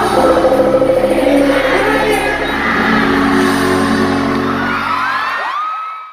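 Live bachata song, amplified through an arena's sound system, with a male lead voice singing and the crowd whooping. The band's low notes stop a little before the end while the voice carries on, then the sound fades out.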